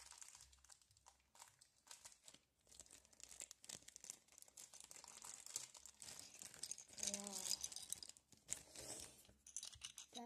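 Faint crinkling and tearing of cardboard and plastic wrapping: a paper advent calendar door is being opened and the small parts unpacked by hand, with a continuous crackle of fine clicks.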